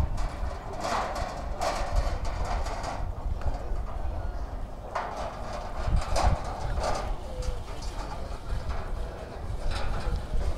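Footsteps on asphalt: a handful of irregularly spaced scuffs and steps over a steady low rumble.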